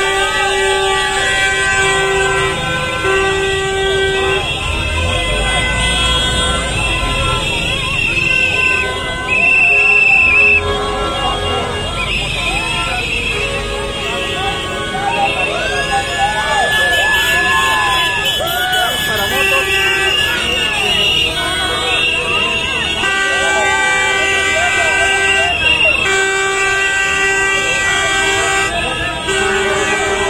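Horns honking over and over, short and long blasts overlapping one another, with people's voices calling out among them.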